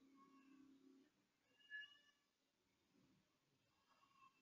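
Near silence: faint room tone, with one short, faint pitched sound a little under two seconds in.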